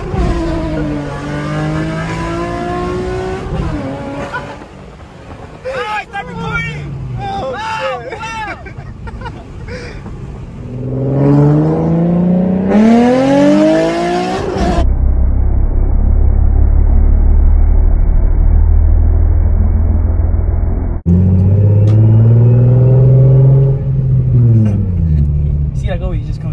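Nissan 350Z's 3.5-litre V6, running a crackle-map tune, revving and accelerating, heard from inside the cabin; its pitch climbs and drops repeatedly with each pull and shift. About halfway through there is a stretch of loud, dull low rumble, then one more rev that rises and falls near the end.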